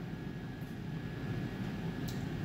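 Steady low background hum with no distinct knocks or clinks, heard while the speech pauses.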